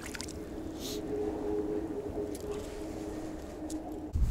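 A small splash as a released perch drops back into lake water, then water lapping and gurgling softly against an inflatable boat, with a faint steady hum underneath from about a second in.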